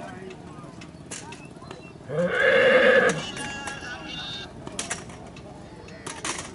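A horse whinnying once, loud and quavering, about two seconds in, lasting about a second and trailing off more faintly, over background voices and a few sharp knocks.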